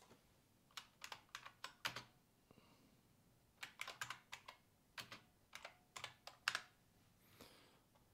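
Faint computer keyboard typing: two short runs of key clicks, the second longer.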